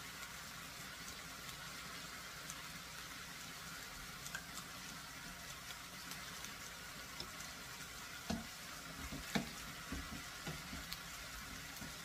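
Okra and shrimp sizzling gently in a skillet on the stove, a low steady frying hiss. A few light knocks come in the last few seconds.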